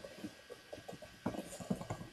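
Faint, irregular light taps and knocks of a stamp block being pressed and rocked down by hand onto cardstock on a craft mat.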